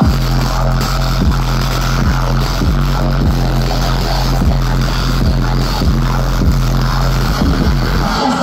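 Live electronic dance music over a festival sound system: a held deep bass note with a kick drum beating about every 0.6 s.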